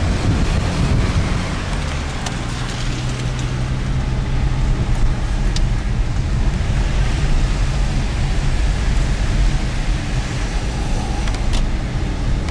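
Steady engine hum and tyre and road noise heard from inside a moving car's cabin, the tyres running on a wet road.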